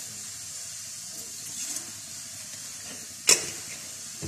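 Gas stove burner hissing steadily under a saucepan of milk being heated. A single sharp click about three seconds in.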